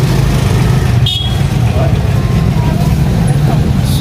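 A steady low rumble and hum, with a brief high ring about a second in.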